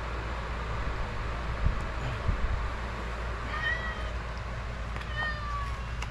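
A cat meowing twice, two short high calls falling in pitch about three and a half and five seconds in, over a steady low hum, with a couple of soft knocks earlier on.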